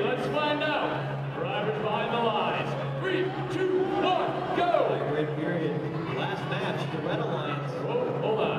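Indistinct voices echoing in a large hall, with music playing faintly underneath and a steady low hum.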